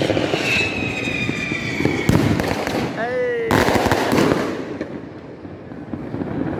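Fireworks going off in the neighbourhood: a dense rattle of bangs and crackles with a falling whistle in the first two seconds. A fresh loud burst of crackling comes in about three and a half seconds in, then it dies down toward the end.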